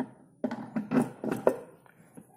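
Knocks and clatter of a plastic tub being handled: a sharp click at the start, then several hard taps over about a second, roughly two a second.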